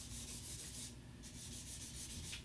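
Felt-tip marker rubbing across paper in several quick strokes as words are marked over.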